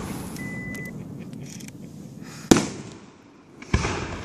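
Aerial firework shells bursting: two sharp bangs, the loudest about halfway through and another near the end, each trailing off in a short echo.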